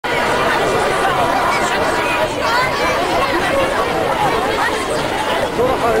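A large crowd of many voices talking and calling out over one another in a loud, continuous babble.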